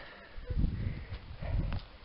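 Footsteps and handling noise from a handheld camera carried while walking on grass: two low thumps about a second apart.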